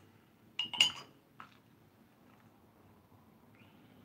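A ceramic mug set down on a hard surface: two quick clinks about half a second in, the second the loudest and briefly ringing, then a lighter knock.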